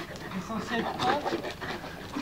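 Two large long-haired dogs play-wrestling, giving short, wavering vocal sounds as they tussle.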